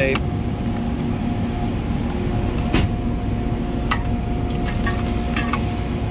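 Steady low machinery hum with a faint constant tone running under it, and a few sharp clicks and knocks as rolls of tape and other items are handled in a metal tool chest drawer, one about three seconds in and several near the end.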